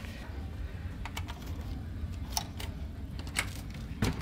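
A few light clicks and taps as a key card is worked in a hotel-style card-slot door lock and its lever handle, over a steady low hum.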